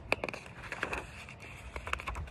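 A picture book's page being turned by hand: a few short paper crackles and handling clicks.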